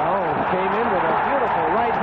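A male fight commentator talking over the action, his voice rising and falling in pitch.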